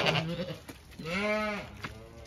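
A Zwartbles ewe bleating once, a single call of under a second beginning about a second in.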